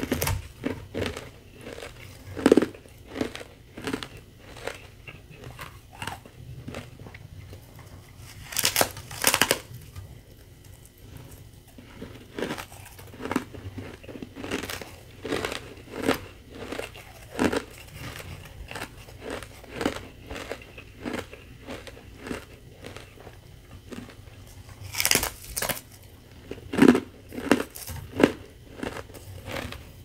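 Thin sheets of powdery carbonated ice crackling as fingers break them and crunching as pieces are bitten and chewed: a steady run of short, crisp cracks, with two louder, longer crunches about nine seconds in and again about twenty-five seconds in.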